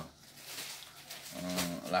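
A man's voice: after a short pause, a drawn-out, level-pitched hesitation sound begins about a second in and runs straight into his speech.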